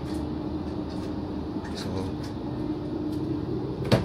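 Steady hum inside an electric multiple-unit train carriage, with a faint steady tone running through it. A sharp click comes near the end as a hand takes hold of the connecting door's handle.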